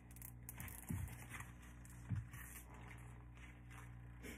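Faint handling noises: light rustling and scraping, with two soft low thumps about one and two seconds in, over a steady low hum.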